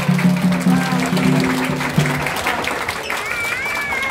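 Clapping and applause as a song ends, over a held low note that stops about two seconds in. A voice calls out near the end.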